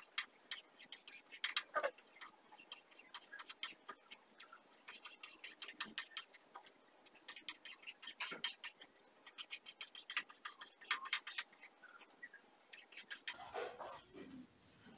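Faint, irregular scratching and ticking of tailor's chalk drawing a line on fabric spread over a table, with some cloth rustling as the fabric is handled.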